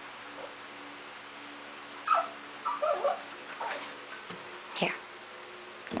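Cocker spaniel puppy whimpering: a few short high whines about two to three seconds in, then a quick whine falling in pitch near the end.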